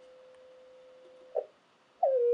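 Faint steady whistle of a CW beat note from a shortwave receiver: the Heathkit VF-1 VFO's carrier being tuned in on 80 meters. About one and a half seconds in there is a short louder blip, and then the tone drops out.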